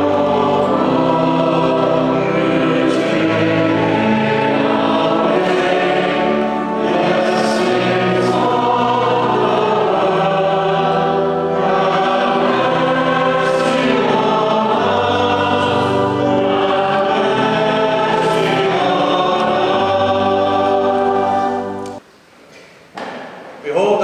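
A choir singing in several parts in long held notes over a steady bass line. The music cuts off abruptly near the end.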